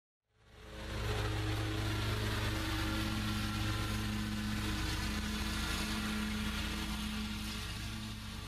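Yamaha MX825V-EFI V-twin industrial engine running steadily at an even speed, fading in about half a second in.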